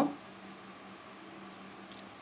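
Quiet room noise with a faint steady low hum, and two light clicks near the end as a clear plastic cup is handled and set down.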